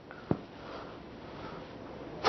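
A short click, then a faint breath drawn in through the nose, a sniff, lasting about a second.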